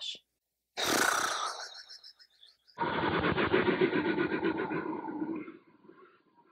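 Two sound effects laid in over the closing shot: a short hissing whoosh about a second in, then from about three seconds in a longer, duller rough sound that fades out near the end.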